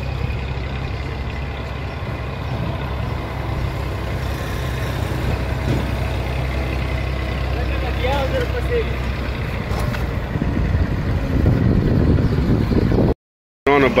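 A vehicle engine idling steadily, a low even hum under street noise, with a louder noisy stretch near the end before the sound cuts out.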